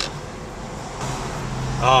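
Car engine and road hum heard from inside a moving car, a low steady drone that grows louder about a second in.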